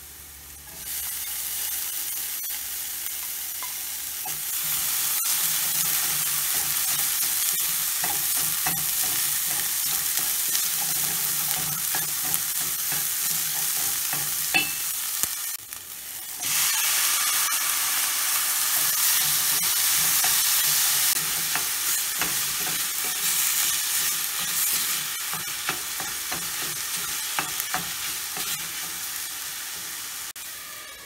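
Chopped green hot peppers, then diced tomatoes, sizzling in hot oil in a stainless steel pan while a spoon stirs and scrapes against the metal. The sizzle dips briefly about halfway, comes back louder as the tomatoes go in, and slowly fades toward the end.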